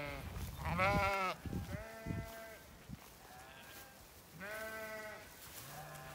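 Zwartbles sheep bleating: about five calls, each roughly a second long, some with a wavering quaver and one held on a steady pitch.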